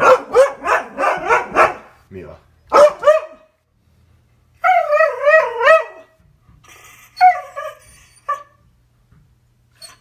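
Husky vocalizing in protest at her owner leaving for work: a quick run of short barking yips in the first two seconds, a couple more a second later, then a long wavering howl-like call in the middle and a few shorter calls after.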